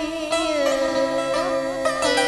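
Traditional Vietnamese cải lương instrumental accompaniment between sung lines: strings holding long notes, with a few plucked notes in the second half.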